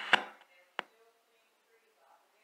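Two short, sharp knocks, the first just after the start and the second a little under a second in, followed by near silence.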